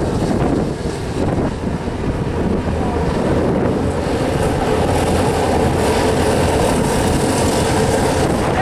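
A pack of racing karts' small engines running hard together in a dense, steady buzz, growing a little louder from about five seconds in as the karts come through the turn toward the microphone.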